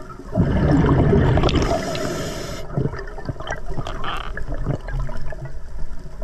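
Underwater sound from a diver: a loud rush of breath and bubbles starts about half a second in and ends in a hiss that cuts off sharply, followed by quieter bubbling water with scattered clicks.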